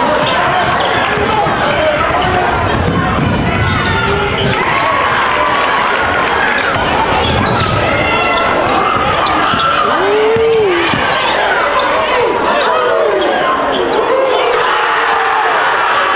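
Basketball game play on a hardwood gym court: the ball bouncing as it is dribbled, with a crowd's voices and shouts going on throughout.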